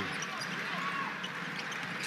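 Arena crowd noise, with a basketball being dribbled on the hardwood court.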